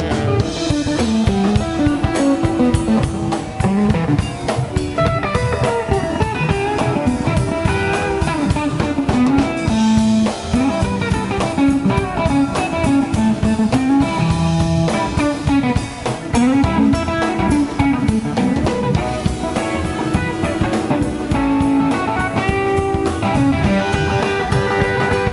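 Live blues band playing an instrumental passage: electric guitar lines to the fore over drum kit and upright bass, with no singing.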